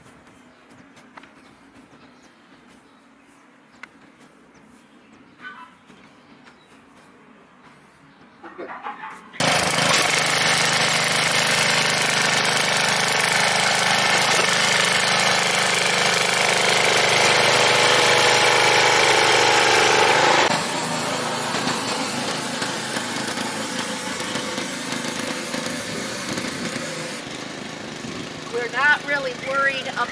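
Rear-tine rototiller's small single-cylinder gasoline engine running under load as its tines work manure into the tilled soil. It comes in suddenly about a third of the way in and drops somewhat in level about two-thirds of the way through.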